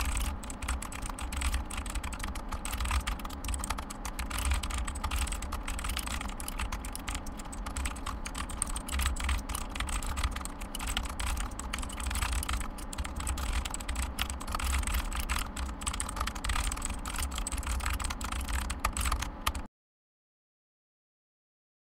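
Fast typing on a computer keyboard, a dense unbroken stream of key clicks that stops suddenly just before the end.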